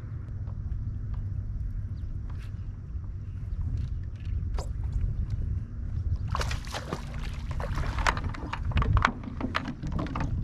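Water around a small fishing kayak: a steady low rumble with small scattered ticks of water against the hull. About six seconds in comes a spell of splashing at the surface, the loudest part, lasting roughly three seconds.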